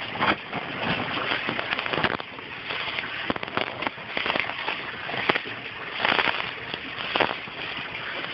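Gravel in an aquaponics grow bed clattering and crunching in many quick clicks as a hand pushes the stones back around a tomato cutting to bury it.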